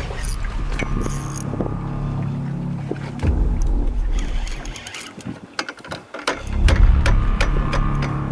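Boat at sea: a steady low rumble and wind on the microphone, dipping briefly just past the middle. A scatter of sharp clicks and knocks comes in over the second half while the rod and spinning reel are worked against a fish.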